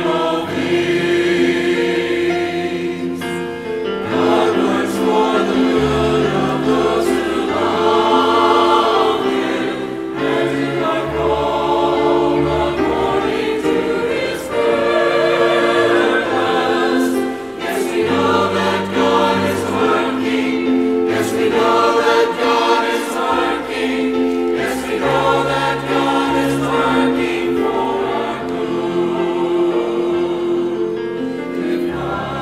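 Mixed church choir of men and women singing an anthem together, with keyboard accompaniment holding low bass notes beneath the voices.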